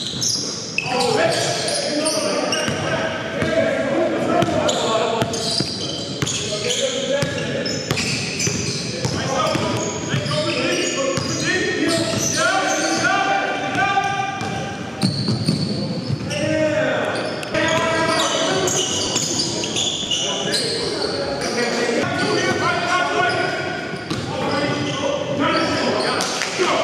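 A basketball being dribbled on a gym floor during play, with voices and echo from a large hall.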